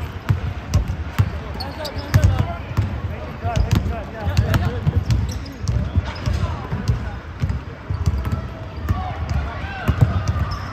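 Basketball bouncing on a hardwood gym floor, repeated thuds at an uneven pace, mixed with sneaker squeaks and indistinct calls from players.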